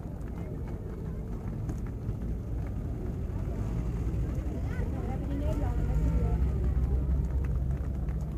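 A motor vehicle's engine rumbling past, growing louder over the last few seconds, with voices from the crowd around it.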